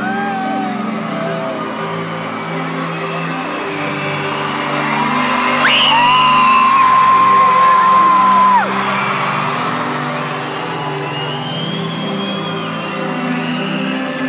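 Arena concert music with a repeating bass pattern, over crowd cries. About six seconds in, a fan close to the microphone lets out a loud high-pitched scream that holds one pitch for about three seconds and then cuts off, with shorter whoops before and after.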